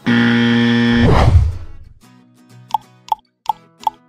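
A quiz-show wrong-answer buzzer sound effect: a loud, harsh, steady buzz for about a second that then drops away and fades. It is followed by a few short plucked notes.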